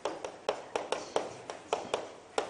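Chalk tapping against a chalkboard while Korean characters are written: a quick series of short, sharp clicks, about four a second.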